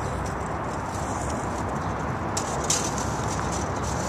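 Steady outdoor background noise with a low rumble and no clear single source, with a few faint clicks about two and a half seconds in.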